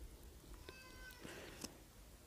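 Near silence, with a brief faint steady-pitched call lasting about half a second, just before the middle, and a few light taps.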